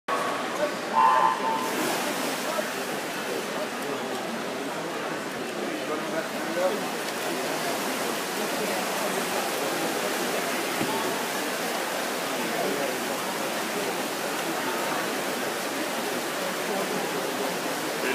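Steady hubbub of a crowded indoor swimming pool hall: many voices mixed with the splashing of backstroke swimmers racing. A short electronic start tone sounds about a second in.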